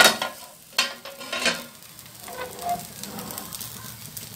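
A dosa sizzling on a hot griddle, with a few sharp clanks and scrapes in the first second and a half as the steel cover plate is lifted off.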